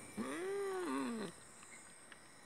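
A man's voice making a wordless, drawn-out creature-like call, about a second long, that rises and then falls in pitch and wobbles as it trails off.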